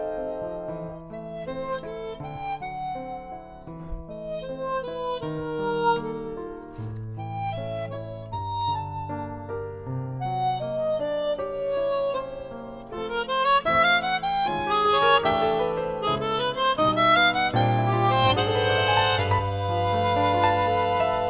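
Chromatic harmonica playing a melody over piano accompaniment with sustained low bass notes. About two-thirds of the way through, the harmonica climbs in quick rising runs and the music grows louder.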